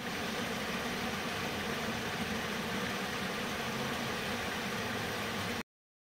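Water jetting through a leak in a wooden canal lock gate and splashing into the lock chamber: a steady rushing noise that cuts off suddenly near the end.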